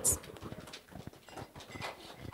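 Scattered, irregular sharp clicks and knocks, a few a second, quieter than the speech around them.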